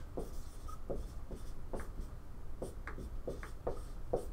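Dry-erase marker writing on a whiteboard: a quick run of short strokes, roughly three a second, as words are written out.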